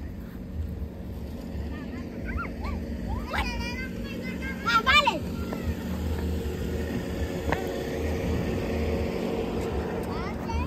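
Young children shouting and squealing as they play, in short high calls, the loudest about five seconds in, over a steady low hum.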